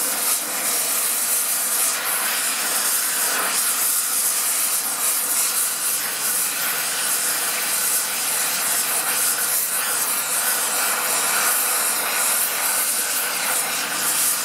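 Oxy-fuel cutting torch flame hissing steadily as it heats the twisted steel of a tractor's front-end loader arm so it can be bent straight.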